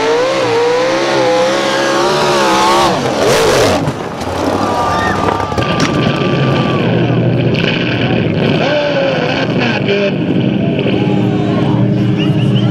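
A mud-drag truck's engine revving hard at full throttle, its pitch wavering up and down for about three seconds as it launches through the mud. About three seconds in there is a sudden loud burst, and then a rougher, noisier stretch with an engine still running.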